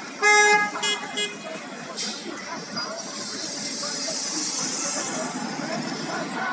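A vehicle horn in city traffic: one long honk, then two short toots. Then a sudden hiss and a steady hiss of traffic passing.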